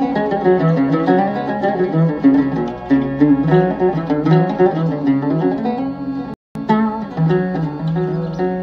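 Oud being played with quick runs of plucked melodic notes. The audio drops out completely for a split second about six and a half seconds in.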